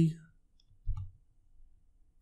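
A single short click about a second in, with a dull low thump to it: a computer mouse button pressed on a desk.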